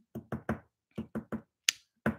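Light taps: six short strikes in two quick runs of three, then one sharp click near the end.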